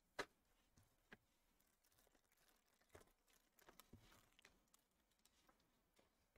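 Near silence with a few faint clicks of trading cards being handled, the clearest one just after the start and a small run of softer ticks a little past the middle.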